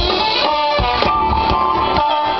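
Live big band playing a soul-funk number, with held sustained notes over a steady beat.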